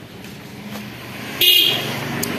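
A vehicle horn gives one short, high-pitched toot about one and a half seconds in.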